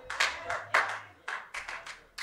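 Scattered hand claps from a few people in the congregation, sharp and unevenly spaced at about three a second.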